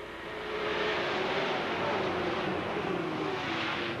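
A pack of dirt-track stock cars racing past together, their engines rising in loudness over the first second and then running steady and loud, with a slight dip in pitch later on.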